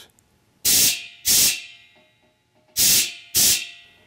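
Rubber-tip air blowgun fed from a portable air tank through a regulator, triggered in four short blasts of compressed air, in two pairs. Each blast hisses for about a third of a second and trails off.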